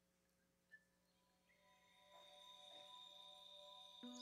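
Near silence with a faint click, then the introduction of an instrumental backing track fades in from about a second and a half: soft sustained tones that swell gradually.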